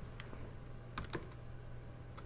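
A few quiet computer-keyboard keystrokes typing a short word, with a close pair of taps about a second in, over a faint steady hum.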